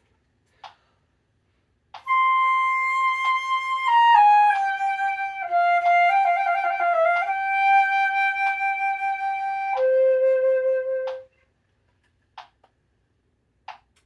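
Solo concert flute playing a slow etude phrase: a held high note, a stepwise descent, then a quick ornamented figure like a trill with grace notes. It settles on a held note and ends on a lower held note that stops about eleven seconds in.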